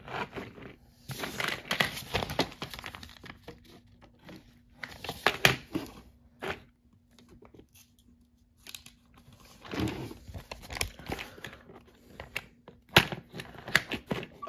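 Hard plastic toy track pieces handled and knocked about by hand, with paper rustling from a sticker sheet. The clicks, knocks and rustles come in irregular bursts separated by short quiet gaps.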